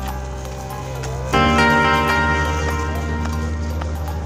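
Background music with sustained chords that change and grow louder about a second and a half in, over light percussive clicks.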